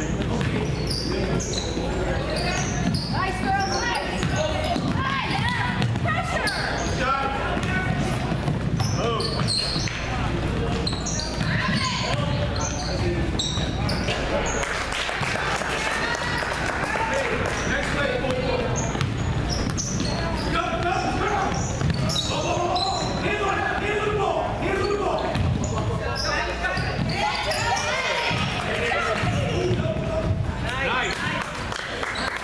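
Basketball game on a gym's hardwood floor: the ball bouncing repeatedly as players dribble and run, with players and onlookers calling out throughout, in a large hall.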